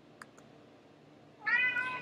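A cat meowing once near the end, a short call that rises and then holds, after two faint clicks.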